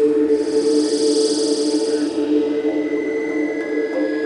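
Psytrance track intro: a sustained synthesizer drone on two steady low tones, with a high shimmering swell that fades about two seconds in and a thin higher tone entering after it. No beat yet.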